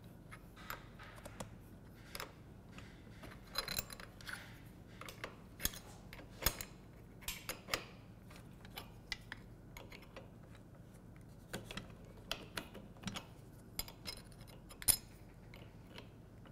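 Irregular light metallic clicks and clinks of a small flat wrench working the collet of a plunge router while a router bit is fitted and tightened. The sharpest click comes about three-quarters of the way through.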